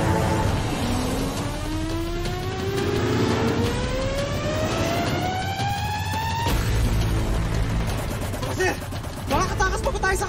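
Dramatic score with a rising tone that climbs steadily for about five seconds and cuts off suddenly, over a low vehicle rumble. Brief voices come in near the end.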